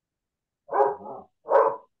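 A dog barking twice, the first bark slightly longer and doubled, picked up on a participant's microphone in a video call.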